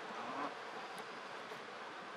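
Steady buzzing drone of insects, with a brief faint voice-like sound in the first half second.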